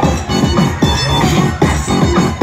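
Loud electronic dance music played by a DJ over a live sound system, with a steady fast beat and falling bass notes.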